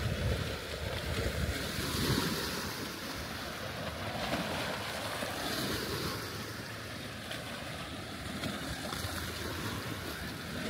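Small sea waves washing against a rocky shore, the wash hissing up every couple of seconds, with wind rumbling on the microphone.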